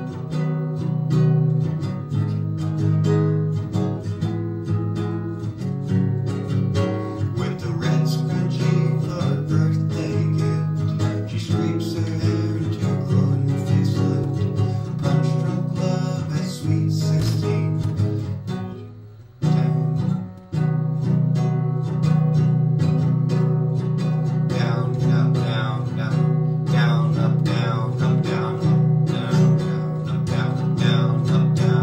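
Acoustic guitar strummed in a steady rhythmic pattern, with a short break about two-thirds of the way through.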